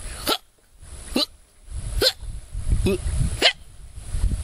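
A man imitating a women's tennis player's grunts: five short, sharp yelps, one a little under every second.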